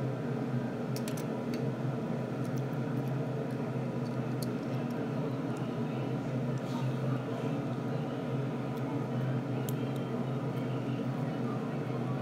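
A steady background hum with a few faint, sharp clicks, most of them in the first few seconds, from small plastic parts being handled.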